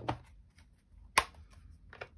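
Hands handling cardstock pieces on a cutting mat: faint paper handling and a single sharp tap about a second in.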